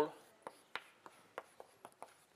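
Chalk writing on a blackboard: a few sharp, irregular taps and short scratches.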